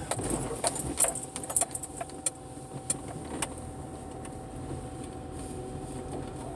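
Inside a car driving slowly: a steady low cabin hum, with a run of light clicks and jangling rattles over the first three seconds or so that then die away.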